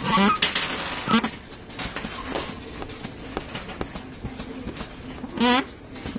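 Faint rubbing and small clicks of hands wiping a phone's glass and display panel clean with alcohol. A few short murmurs from the person working, near the start, about a second in and near the end.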